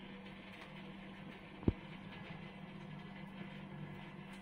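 A single soft thump about two seconds in, as a lump of washed butter is set down in a steel pot, over a steady low hum.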